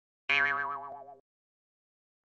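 Cartoon 'boing' spring sound effect: a wobbling twang that starts a moment in and fades away over about a second, marking a character's comic crash landing.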